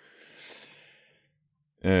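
A man's audible sigh: one breathy exhale that swells and fades away within about a second. Near the end he starts a drawn-out 'euh'.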